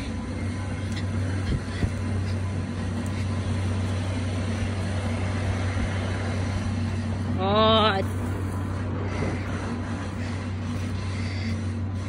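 A motor runs with a steady low hum throughout. About halfway through, a brief wavering voice-like sound rises above it.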